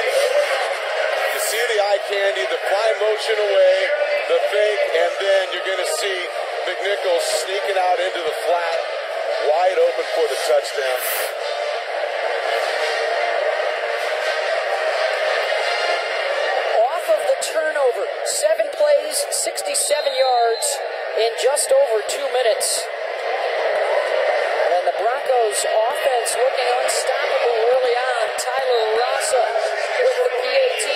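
Stadium crowd noise heard through a TV broadcast: many voices overlapping in a steady, thin-sounding din after a touchdown, with no single voice standing out.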